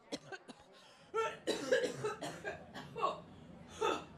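A woman coughing into a microphone: a run of short coughs starting about a second in and going on nearly to the end.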